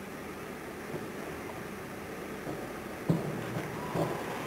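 Steady hiss of a diving-pool hall's ambience. A single sudden thud comes about three seconds in, from the springboard dive.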